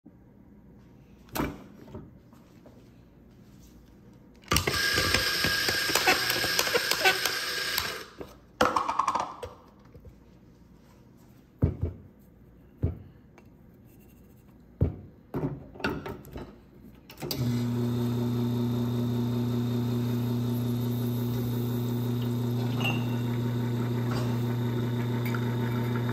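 Espresso-making sounds: a loud whirring noise for about three and a half seconds, then a series of knocks and clunks as the portafilter is tamped and handled. About 17 seconds in, the espresso machine's pump starts with a steady low hum and keeps running as the shot pours.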